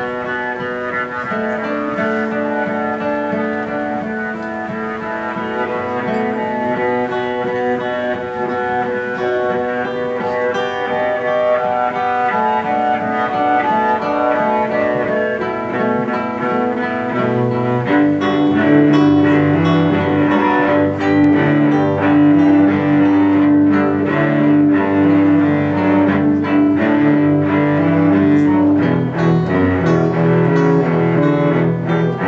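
Instrumental passage of an acoustic band: a bowed cello holding long notes over plucked acoustic guitar, with no singing. About 18 seconds in the music swells louder, with a fuller low line and a long held note.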